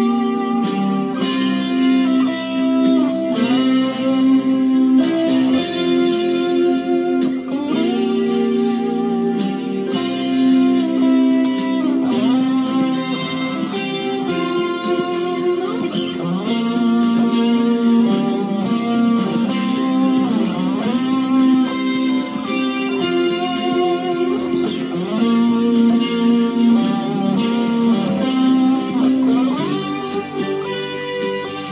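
Fender Stratocaster electric guitar played as a melody of picked notes with frequent string bends and slides.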